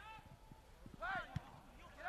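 Faint sound of a soccer match in play: a player shouts briefly about a second in, over scattered light thuds of running feet.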